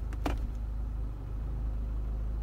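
Mini crossover's engine idling, heard from inside the cabin as a steady low rumble.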